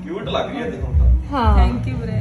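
Speech: a short bit of voice, with little else to hear besides.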